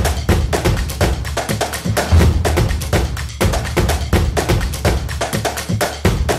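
Marching drum band playing a fast, steady beat: a Dixon bass drum with snare drums and sharp stick strikes.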